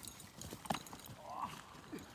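A Boxer dog galloping across grass: a quick, uneven run of faint paw-falls on the turf.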